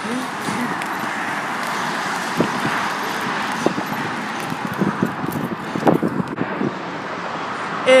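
Steady noise of busy highway traffic, with tyres and engines blending into one even wash. A few brief, sharper sounds poke through about two and a half, four and six seconds in.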